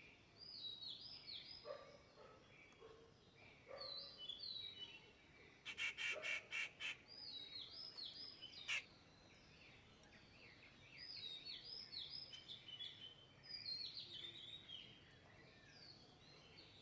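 Small birds chirping, with many short, high, downward-slurred calls coming through most of the clip. A quick run of about six harsh, evenly spaced notes comes about six seconds in, followed by one sharp note.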